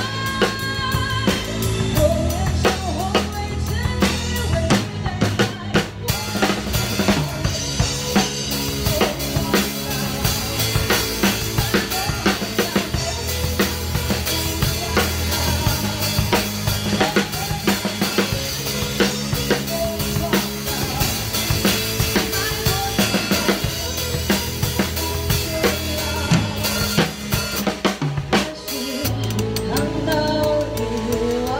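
Live band playing an instrumental passage with the drum kit loudest: a steady pattern of bass drum, snare and cymbals over sustained bass notes from the rest of the band.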